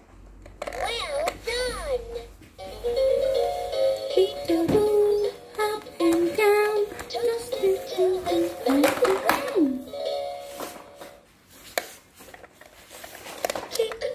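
Fisher-Price peek-a-boo toaster toy playing its electronic tune through its small speaker, a melody of short notes with two sliding sound effects about a second in and a few sharp clicks.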